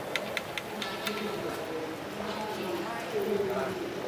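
People talking in the background, with a run of four or five sharp clicks about a quarter second apart in the first second.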